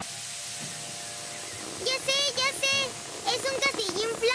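Cartoon electric air pump inflating a bouncy castle: a steady hissing rush of air with a faint hum, switched on suddenly at the start.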